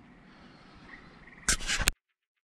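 Quiet outdoor background, then about a second and a half in a short, loud burst of rustling noise on the microphone lasting about half a second, after which the sound cuts off.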